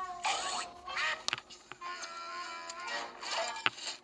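Background music with sliding, wavering notes and a couple of sharp clicks.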